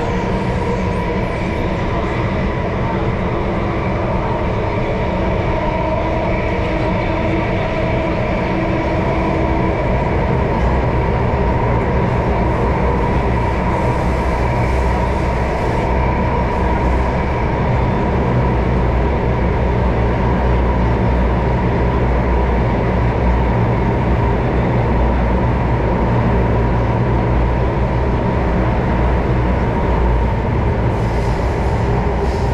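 Metro train running at speed, heard from inside the passenger car: a loud, steady rumble and rail roar with a steady high whine over it.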